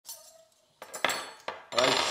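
A metal knife and fork clinking as they are handled and set down by a plate on a table, with a short ringing clink early on and two sharp clinks around the middle.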